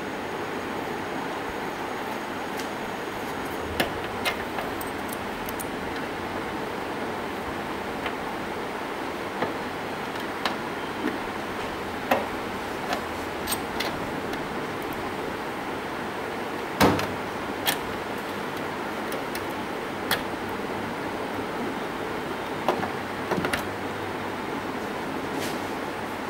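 Scattered small clicks and knocks of a round metal sensor connector plug and a tool being handled and fitted against a panel socket, the loudest about two-thirds of the way through, over a steady background hiss.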